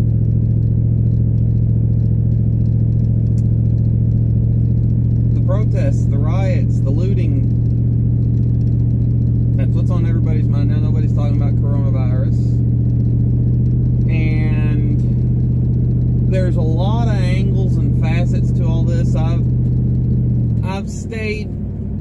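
Steady low drone of a car heard from inside the cabin while driving, engine hum and road noise together. Near the end the hum drops away and the level falls.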